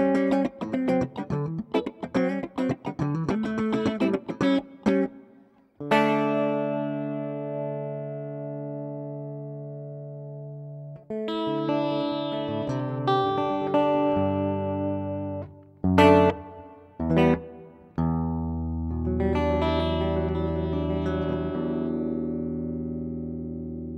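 Electric guitar played through a T-Rex Soulmate multi-effects pedal, recorded direct. Quick, choppy picked notes for about six seconds, then a chord left ringing and slowly fading. More notes and two short stabs follow, and a last chord rings out to the end.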